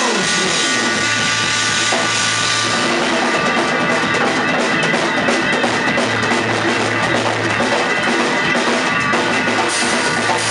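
Live rock band playing an instrumental passage with no vocals: drum kit, bass and electric guitars, hand drums, and a trumpet over the top. The drumming gets busier about three seconds in.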